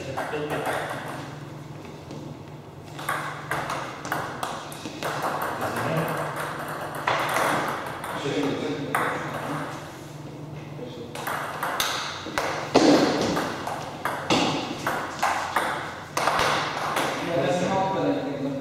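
Table tennis rallies: a ball being hit back and forth, making quick runs of sharp clicks as it strikes the bats and the table, with short gaps between points.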